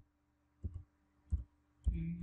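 Three computer keyboard keystrokes, short separate clicks about two-thirds of a second apart, as a word is typed slowly.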